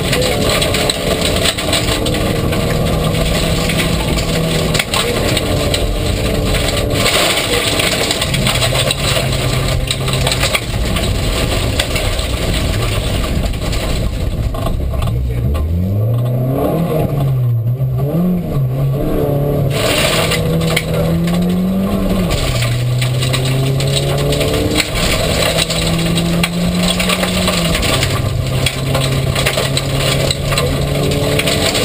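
A VW Golf rally car's engine, heard from inside the cabin, run hard on a gravel stage. It holds a high, steady pitch that steps between gears, with a constant rush of gravel and road noise. About fifteen seconds in, the revs drop and waver through a slow corner, then climb back up.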